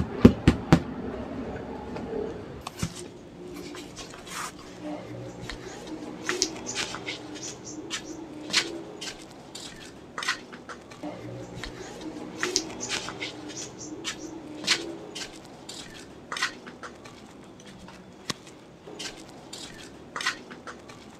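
Light, irregular clicks and taps of woven bamboo trays and grated cassava being handled and shifted.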